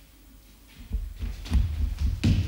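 Dull, low thuds of feet and bodies on a wooden parquet floor, starting about a second in and coming several times, growing louder.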